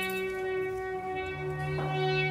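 Quartet of trombone, tuba, drums and guitar playing a slow piece of held, droning tones. A low note enters a little past halfway and is sustained.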